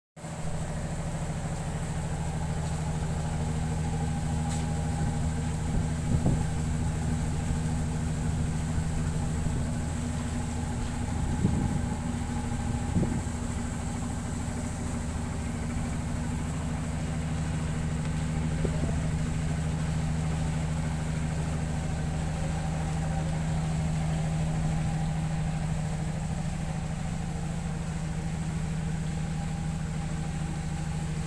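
A boat's engine running steadily at low revs, a low even hum throughout, with a few brief higher-pitched sounds here and there, the clearest around a dozen seconds in.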